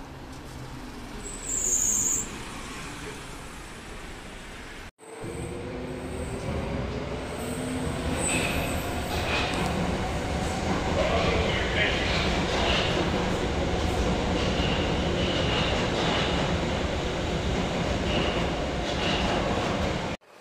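An articulated city bus pulling away, with a short high hiss about a second and a half in. After a cut, a U-Bahn metro train pulls out of an underground station: a rising motor whine at first, then a steady rolling rumble with intermittent high wheel squeals.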